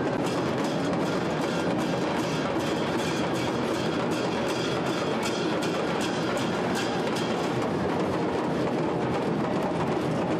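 Steady, rapid drumming of a Muharram procession, with dense crowd noise beneath it.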